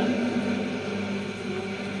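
Pause in an archival speech recording played from a vinyl record: steady hiss and a low, even hum of the old recording and the playback, with no voice.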